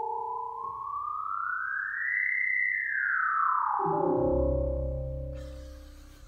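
Electronic synthesizer tones played from an iPad app: a single tone glides smoothly up over about two seconds, holds briefly, then slides back down. About four seconds in, a low chord with a deep bass note comes in and fades out.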